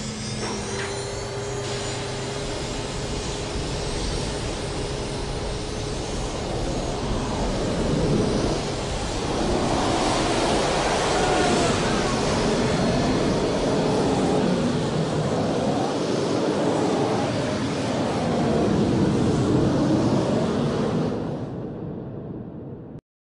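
Twin MiG-21 jet engines of the Big Wind fire-fighting vehicle running at high power, a continuous rush of jet noise. A thin steady whine sits over it for the first few seconds, and the noise grows louder about eight seconds in as the throttles open.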